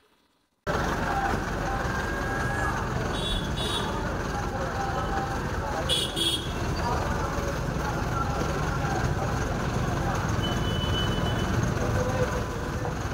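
Steady din of traffic and idling engines beside a bus, with indistinct voices in it, and two short horn toots about three and six seconds in.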